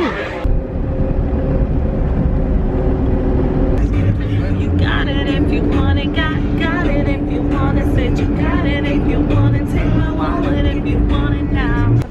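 Steady low rumble of a moving vehicle heard from inside it, with a steady hum running under it. Voices talk over it from about four seconds in.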